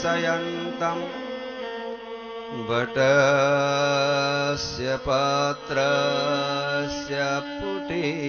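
Devotional bhajan singing: a voice drawing out long, ornamented notes over steady held accompanying tones. A lower sustained tone enters about two and a half seconds in, and the music grows louder just after.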